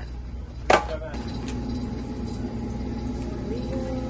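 A single sharp knock about a second in, then a steady low background hum with a faint, even whine.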